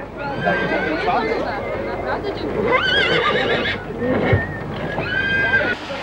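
Horse neighing several times, the longest call near the middle high and wavering, over the chatter of a crowd.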